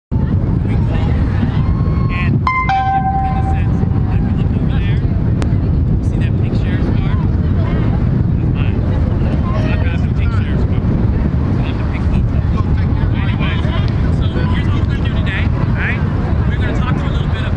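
Steady low rumble of wind on the microphone, with faint chatter of a crowd of children and adults in the background and a brief pitched call or whistle about two and a half seconds in.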